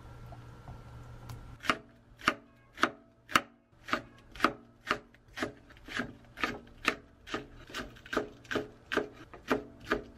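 Kitchen knife slicing green onions and a green chili on a wooden cutting board: steady chopping strokes, about two a second, starting a second and a half in. Before the chopping starts, only a low steady hum.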